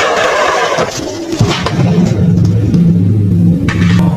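Film soundtrack: a rushing, hissing whoosh effect for about the first second, then low music with steady held notes that change every half second or so.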